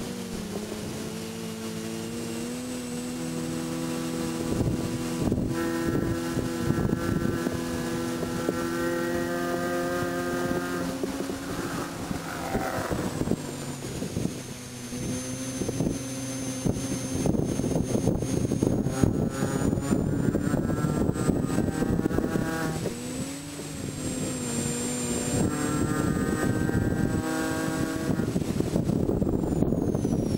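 Inside the cabin, a 2006 Mini Cooper S John Cooper Works' supercharged 1.6-litre four-cylinder runs hard in third gear under race load. Its note drops sharply about twelve seconds in as the car slows for a corner, then climbs again with another brief dip later. Steady wind and road noise and cabin rattles run under it.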